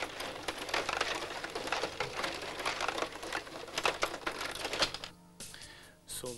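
Table hockey being played on a Pola 500 rod hockey table: a fast, irregular clatter of the rods being pushed and twisted, with the plastic players and puck clicking against each other and the boards. The clatter stops about five seconds in.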